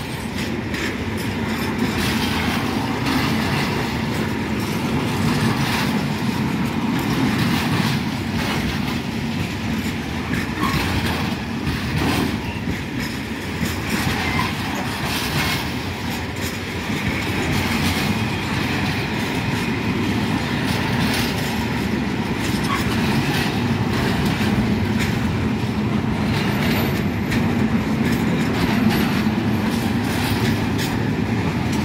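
Container freight train wagons rolling past at close range: a steady low rumble of steel wheels on rail, with repeated clicks as the wheels pass over the track.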